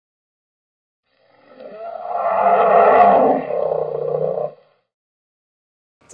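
A roar-like intro sound effect: one long roar that swells in about a second in, peaks near the middle, and cuts off about four and a half seconds in.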